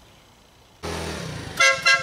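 A motor scooter's horn beeping twice quickly, over the scooter's small engine running.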